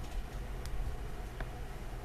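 Steady low rumble with a light hiss from an open microphone on a video call, with a few faint clicks, about a second apart.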